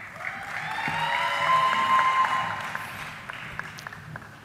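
An arena audience applauds and cheers for a graduate as her name is called. The clapping swells about half a second in, a drawn-out shouted cheer rises over it, and both fade toward the end.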